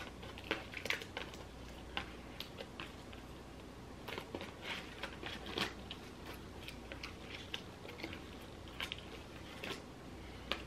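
Light handling noise of ribbon bows and their twist ties being pulled off a cardboard backing card. Faint crinkles and small clicks are scattered throughout.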